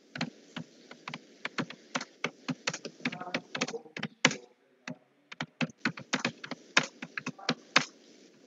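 Typing on a computer keyboard: a quick, irregular run of key clicks, with a brief pause a little after the middle.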